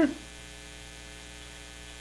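Steady electrical hum in the recording: a constant low drone with a faint buzz of many evenly spaced tones, unchanging throughout.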